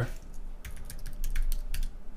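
Typing on a computer keyboard: a quick, irregular run of keystrokes starting about half a second in.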